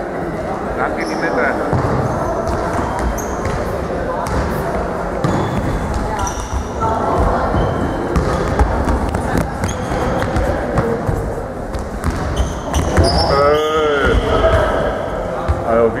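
Hall football in play in an echoing sports hall: a ball kicked and bouncing on the hard floor, short high squeaks of shoes, and a steady hubbub of players' and spectators' voices, with a loud shout about thirteen seconds in.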